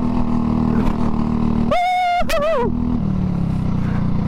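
Go-kart engine running at a steady note at racing speed, heard from on board the kart, its pitch dropping a little about three seconds in. About two seconds in, the driver gives a brief loud shout, flat and then falling in pitch.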